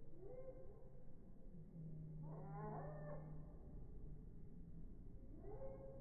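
Three faint, drawn-out animal calls that bend up and down in pitch: a short one at the start, a longer, louder one in the middle and another near the end. A low steady hum sounds under the middle call.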